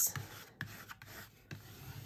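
Plastic scraper rubbing in repeated strokes across an Avery self-laminating sheet laid over printed sticker paper, pressing it down and working out air bubbles.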